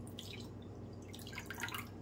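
Water poured in a thin stream from a plastic measuring jug into a ceramic bowl over a raw egg, trickling and dripping, with a louder spell of splashing about a second in.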